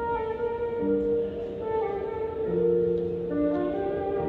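Chamber trio of flute, oboe and piano playing a pop-song arrangement: the two wind instruments come in together over the piano at the start, holding melody and harmony in long, smoothly changing notes.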